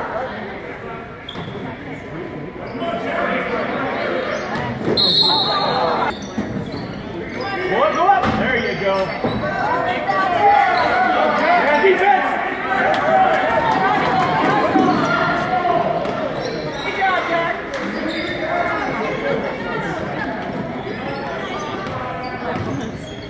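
Basketball bouncing repeatedly on a hardwood gym floor during play, with voices of players and spectators echoing around the gym.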